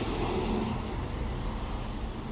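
Road traffic passing close by: a truck and cars driving past, with steady engine and tyre noise. A truck's engine hum fades out in the first half-second as it moves away.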